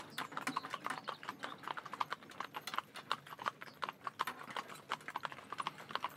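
Hooves of three Shetland ponies walking on a paved lane in harness, a continuous irregular clatter of many overlapping hoofbeats.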